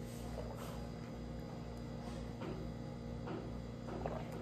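A few soft gulps as orange juice is swallowed from a glass, over a steady low electrical hum.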